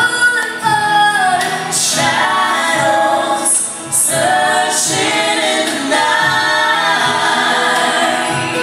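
Live pop band with several singers singing a song together, heard from the audience in a large hall.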